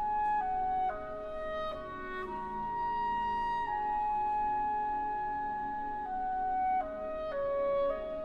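Clarinet solo over soft sustained orchestral accompaniment: a slow melody of held notes that steps downward, rises to one long high note held for about three and a half seconds in the middle, then steps down again near the end.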